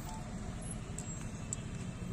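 Engine of an open ceremonial jeep running as it rolls slowly past, a steady low rumble, with a couple of faint clicks about a second in.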